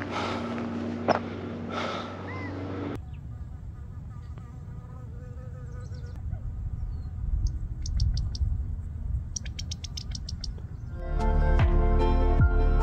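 Insects buzzing over a low rumble, with short high chirps about seven to eight seconds in and a quick run of about eight high chirps about nine to ten seconds in.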